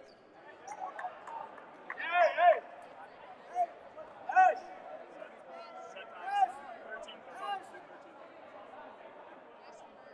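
Indoor gym with a hum of background voices, broken by about four short, sharp, high-pitched squeaks or calls whose pitch rises and falls. The loudest is a quick run of them about two seconds in, with single ones spread through the rest.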